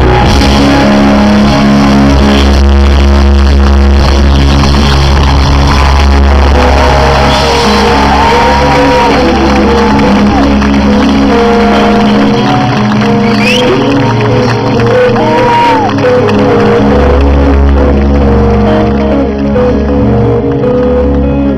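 A live band playing loud on stage, recorded from within the crowd. The deep bass drops away about twelve seconds in and comes back about five seconds later.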